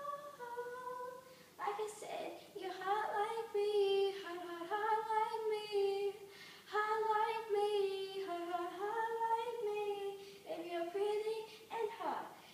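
An 11-year-old girl singing unaccompanied, a melody of held notes about a second long that step up and down, with short gaps between phrases.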